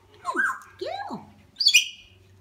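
African grey parrot calls: two short calls that glide in pitch, one swooping up and one falling away, then a loud, shrill, high-pitched call near the end.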